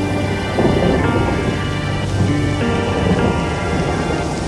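Ambient background music with long held notes. A rumbling wash of noise is layered over it from about half a second in.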